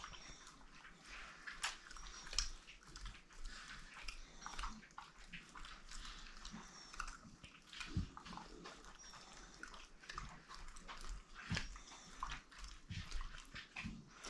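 A dog making faint mouth sounds: irregular wet clicks of licking or chewing, with a few short, high, faint whimpers.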